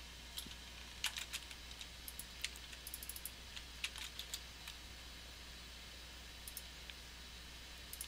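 Faint, scattered clicks and taps of a computer keyboard and mouse. There is a run of quick strokes through the first half, and a couple more a little later.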